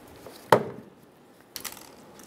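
Toyota Camry exterior door handle snapping free of the door as it is pulled forcefully outward: one sharp snap about half a second in, then a few light clicks near the end.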